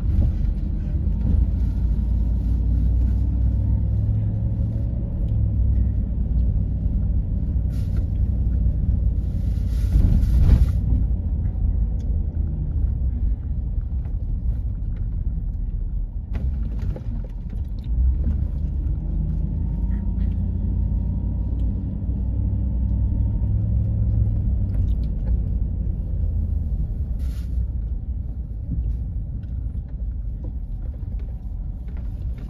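Car cabin noise while driving slowly: a steady low rumble of engine and tyres on the road. A short hiss comes about ten seconds in.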